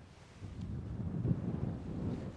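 Wind buffeting the microphone: a low, uneven rumble that builds about half a second in and stays up.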